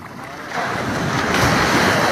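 Sea waves washing in, with wind buffeting the microphone, swelling louder about half a second in.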